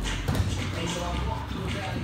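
Wrestlers scuffling and landing on a padded wrestling mat during a takedown, with one sharp thump about a third of a second in. Voices are heard throughout.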